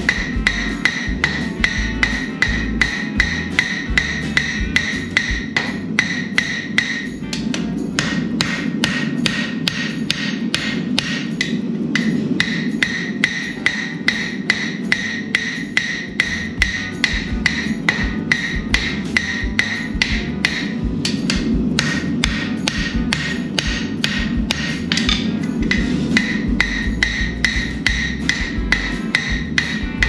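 Hand hammer striking red-hot steel sucker rod on the horn of an anvil, a steady run of quick blows, about two to three a second, with the anvil ringing after each one and a few short pauses.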